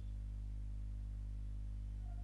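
A steady low hum, the recording's own background noise, with nothing else sounding.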